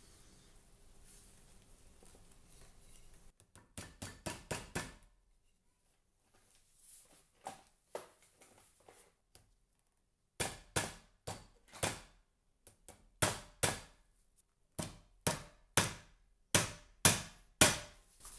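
Small hammer tapping iron upholstery nails into the metal ring at the top of an umbrella, pinning the loose ring to the shaft. It comes as light, sharp taps in groups: five quick taps about three and a half seconds in, two more around eight seconds, then a longer run of about a dozen taps from about ten seconds until near the end.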